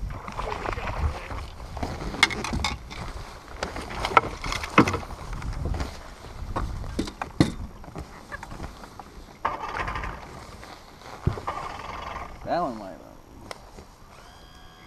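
Knocks, clicks and handling noise on a bass boat's deck as a bass is landed and unhooked, with a short voice sound near the end.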